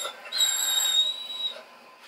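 A dog whining in one long, thin, high-pitched note that fades out after about a second and a half, begging for the duck.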